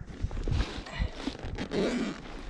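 Close handling noise: rustling and scraping with irregular sharp clicks as a hand works a soft-sided ice-fishing sonar case and its transducer.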